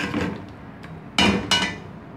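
Slotted metal spatula scraping through thick masala in an aluminium pot, then two ringing metal clanks against the pot a little over a second in, about a third of a second apart.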